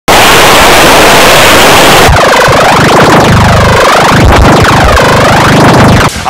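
Extremely loud, distorted electronic noise: about two seconds of harsh static hiss, then a warbling sound with repeated swoops up and down in pitch.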